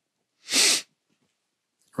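A single short, hissy breath sound from a person, about half a second long, a little under a second in.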